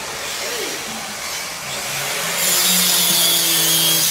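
A small handheld electric circular cutter running and cutting into a board. It comes in loud a little past halfway, a steady hum under a hiss of cutting.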